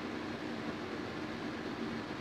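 Steady background hiss with a faint low hum, even throughout: room tone picked up by the microphone.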